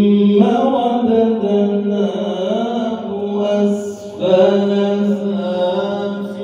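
A male reciter chanting the Quran in melodic tajwid style, holding long notes with ornamented pitch turns, amplified through a microphone and loudspeaker. The phrase breaks off briefly just before four seconds in, and a new phrase begins.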